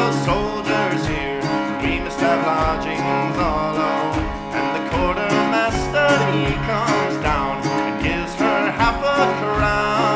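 Instrumental break in a folk ballad: an ornamented melody line over plucked-string accompaniment and a steady beat.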